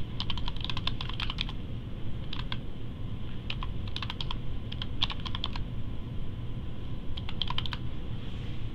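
Typing on a computer keyboard: quick runs of keystroke clicks in about five short bursts with pauses between, over a steady low background hum.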